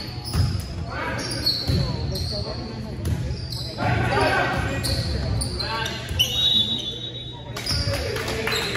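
A volleyball rally: a ball being struck by players' hands and arms, several sharp thumps echoing in a gymnasium, the loudest about six seconds in. Short high squeaks from sneakers on the hardwood court come in between, with players calling out.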